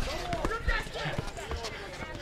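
Basketball dribbled on a hard court, a few bounces, with onlookers' voices chattering behind.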